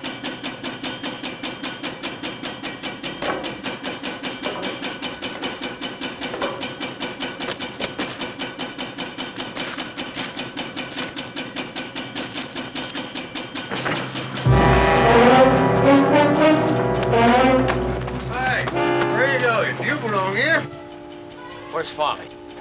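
Tense orchestral film score: a fast, even pulsing figure, then a sudden loud orchestral swell with deep bass about fourteen seconds in, easing down near the end.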